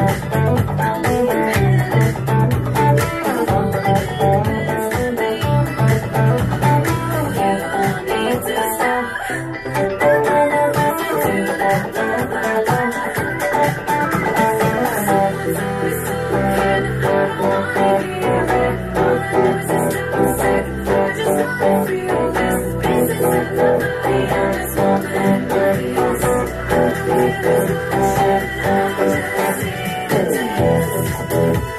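Godin TC electric guitar played through an MXR Fat Sugar overdrive pedal, running through a pop-rock song's guitar part, along with music that carries a bass line and a steady beat.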